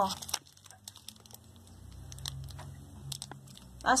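Clear plastic wrapping of an air-layered root ball crinkling as hands peel it back from the soil, in scattered short, faint crackles.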